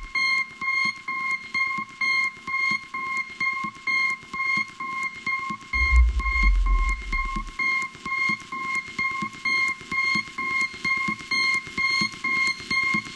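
Techno in a DJ mix, in a breakdown: a high synth beep repeats about three times a second over ticking percussion, with the deep bass and kick dropped out. A low bass swell comes back briefly about six seconds in.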